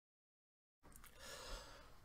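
Near silence: dead silence, then faint room hiss fading in a little under a second in, with one faint brief sound about halfway through.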